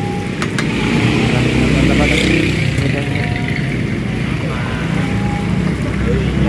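Steady low rumble of motor traffic running close by, with a couple of sharp clicks about half a second in.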